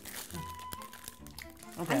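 Clear plastic wrapping around a giant gummy bear crinkling as it is handled, over quiet background music.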